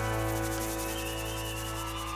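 A live band's closing chord held on acoustic guitars and other instruments, a steady sustained sound that fades a little.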